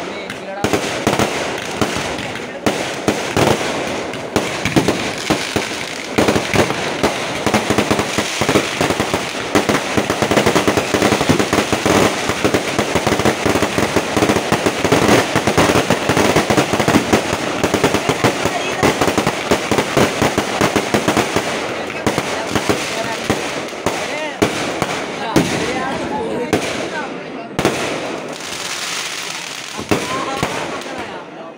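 A dense fireworks barrage: rapid, overlapping bangs and crackles of aerial shells and firecrackers going on without pause. It is heaviest in the middle and thins out with short gaps near the end.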